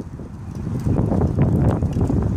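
Wind buffeting a phone microphone as a low, steady rumble, with a few soft knocks.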